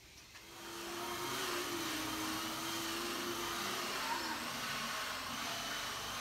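A motor running steadily, an even whirring rush with a faint low hum, coming up within the first second.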